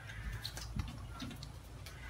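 Faint, scattered light clicks and taps over a low steady background hum.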